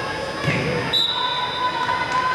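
Chatter of spectators echoing in a gymnasium, with a short, high referee's whistle blast about a second in, the whistle for the next serve.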